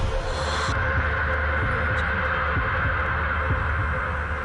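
Logo-intro sound design: a steady deep bass hum with a higher droning tone above it, and short low thuds recurring about every half second.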